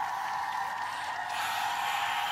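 A long, high-pitched cheering 'woo', held at one steady pitch.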